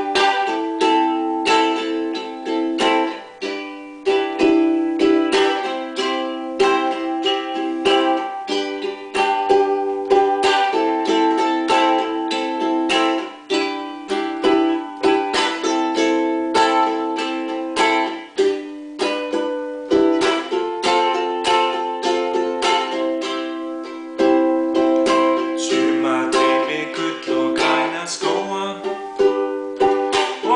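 Tanglewood ukulele strummed in a steady rhythm, the chords changing every second or two.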